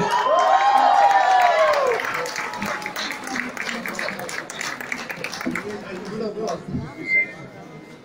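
Concert audience applauding and cheering, with one long cheer rising and falling over the first two seconds. The applause then dies away, leaving scattered claps and voices.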